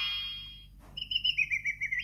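VTech Musical Tambourine toy's electronic sound effect: the tail of a rising glide fades out, then after a soft click comes a fast chirping warble of short beeps, about eight in a second, dropping slightly in pitch.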